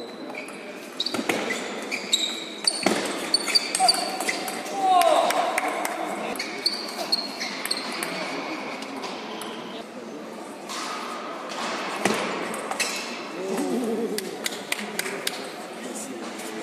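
Table tennis ball clicking off rackets and table in rallies, many sharp knocks with short ringing pings, echoing in a large hall. Voices come in briefly about five seconds in and again near the end.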